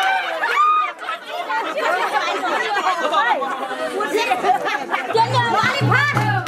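A crowd of many voices chattering and calling out over one another. Near the end, music with a low, repeating beat starts up.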